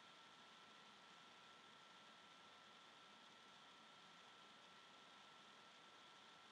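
Near silence: a faint steady hiss from the webcam microphone, with a thin high steady tone running under it.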